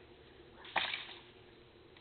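One sharp crack about three-quarters of a second in, fading quickly: a dry branch snapping as it is yanked and wrenched by hand.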